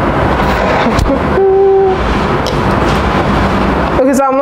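Steady loud low rumbling background noise, like a machine running, with a short steady hummed tone about one and a half seconds in.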